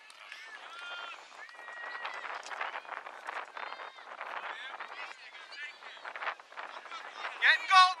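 Distant voices of players and spectators calling out across a youth soccer field, several overlapping, with a close man's voice breaking in loudly with a shout near the end.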